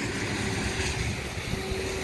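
Wind buffeting the microphone outdoors: an uneven low rumble over a steady hiss, with a faint steady hum underneath.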